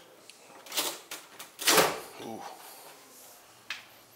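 A refrigerator door being pulled open, its tight seal breaking: a few short scuffs, then the loudest burst, a sudden whoosh as the door comes free, a little under two seconds in.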